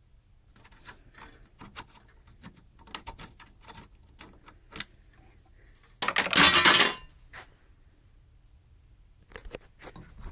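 Small metallic clicks and ticks of a hex screwdriver turning out a screw in an aluminium chassis frame, with one loud metallic rattle about six seconds in lasting about a second.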